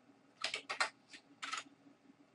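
Computer keyboard being typed on: a quick run of about six keystrokes, starting about half a second in.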